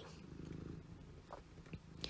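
A faint low rumble, little above near silence, with a couple of soft short ticks later on.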